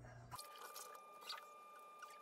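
Near silence: a faint steady high tone with a few soft clicks.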